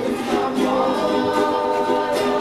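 Several voices singing together in held notes over a strummed string accompaniment.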